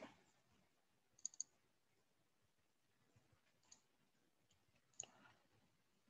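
Near silence broken by a few computer mouse clicks: a quick run of about three a little after a second in, then single clicks spread through the rest.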